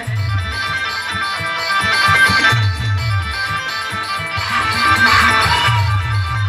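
Timli dance music from a live band, played loud over a sound system: a plucked guitar lead melody over a repeating low drum-and-bass beat.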